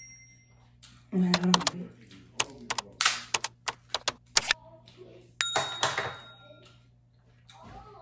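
Crab shell being cracked and snapped apart by hand: a run of sharp cracks, then a longer crackling snap about halfway through.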